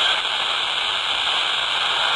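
Steady static hiss from a Baofeng BF-F8+ handheld radio's speaker while it is tuned to the SO-50 satellite downlink, with no voices coming through.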